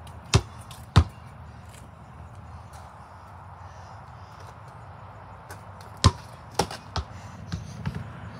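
Basketball bouncing on a concrete driveway. Two bounces come early, about two-thirds of a second apart. After a pause there is a run of five quicker bounces near the end, fading a little.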